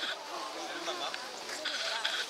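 Indistinct chatter of several people's voices, with a high-pitched voice rising above it near the end.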